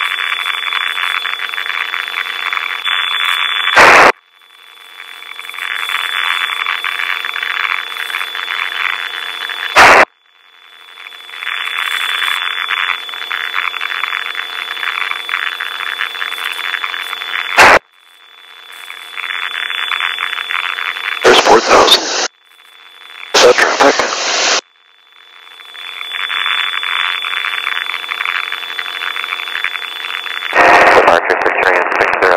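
Steady hiss with a thin high whine on the light aircraft's recorded radio and intercom audio. It is cut off by a sharp click three times and fades back in each time. Near the end come two short, louder bursts.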